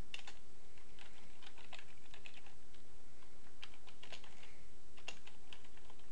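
Computer keyboard keys being typed in short irregular bursts of clicks, with a pause of about a second midway, as commands are typed into a command prompt.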